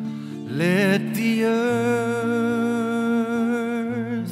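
Live song with acoustic guitar and keyboard: a voice slides upward about half a second in and then holds one long note, over sustained low keyboard tones.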